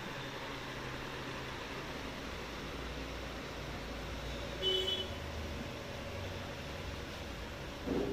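Steady background hum and hiss of a quiet room, with one brief, faint high-pitched tone about halfway.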